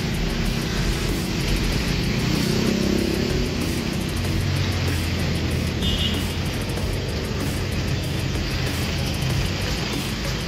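Steady city street traffic, cars and motorcycles, with music playing over it.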